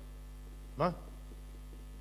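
Steady low electrical mains hum from the sound system, with one short spoken word about a second in.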